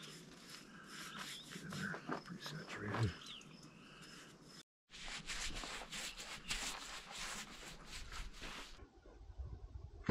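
Paintbrush bristles scraping over rough-cut lumber as a coat is brushed on: a dense run of short, quick strokes lasting about four seconds in the middle. Before it there are faint voices.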